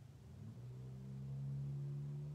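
Faint, sustained low drone of two held tones a fifth apart, a soft meditation drone. The lower tone breaks off briefly and returns about half a second in.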